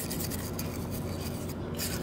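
Light rubbing and handling noises of a metal throttle body being turned and wiped in the hands during cleaning, a scatter of small scrapes and ticks over a steady low hum.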